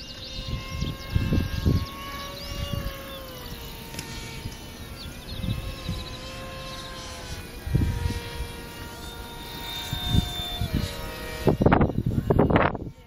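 Ducted-fan motors of two radio-controlled F-16 model jets whining overhead as steady tones, their pitch dipping a little about three seconds in and again near the end as the throttle changes. Gusts of wind buffet the microphone now and then.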